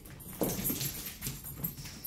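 A pet dog whining, one pitched call starting about half a second in and then softer sounds, as it waits eagerly to be fed.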